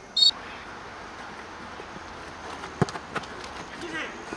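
A referee's whistle gives one short, shrill blast just after the start. About three seconds in, two sharp thuds of the football being kicked.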